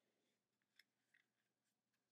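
Near silence: room tone, with a couple of faint ticks from the paper cone being handled.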